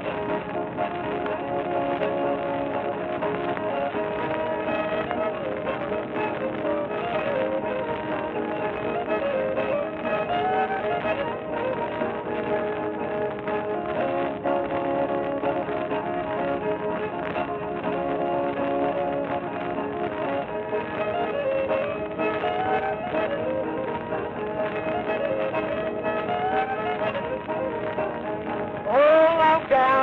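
Old-time fiddle playing a fast breakdown tune on an early 78 rpm record, thin and dull-toned with no treble. A man's voice comes back in singing near the end.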